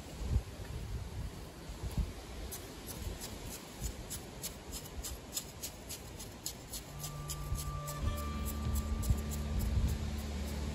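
Metal edging tool working into sandy soil, with repeated short scrapes and chops of the blade in the earth. Background music with steady low notes comes in about seven seconds in.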